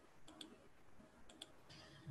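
Near silence with a few faint computer mouse clicks, two close pairs about a second apart.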